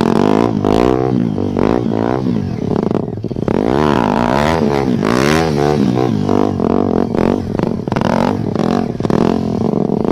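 KTM Duke motorcycle engine revved up and down in quick, repeated throttle blips during stunt riding, the pitch rising and falling about twice a second, with a short lull about three seconds in.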